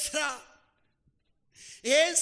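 A man preaching into a microphone, breaking off for about a second, then drawing a quick audible breath and starting to speak again near the end.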